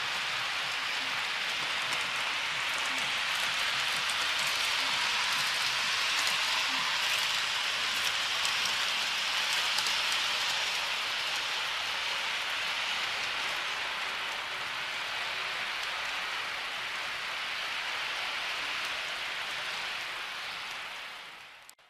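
Model train running on the layout's track: a steady rushing hiss of wheels on rail and a small electric motor, swelling as the train passes close about halfway through and easing off afterwards.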